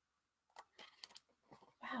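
Faint paper rustling and a few small clicks as a picture book's pages are handled and turned, starting about half a second in.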